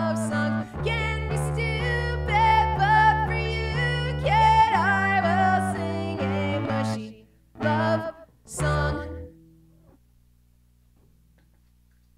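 A woman singing over her own electric bass at the close of a song. The music ends with two short final hits about eight and nine seconds in, followed by near silence.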